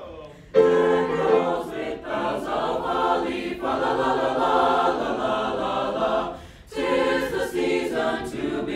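A choir singing a Christmas song together in harmony. The voices come in about half a second in, break off briefly a little after six seconds, and then come in again.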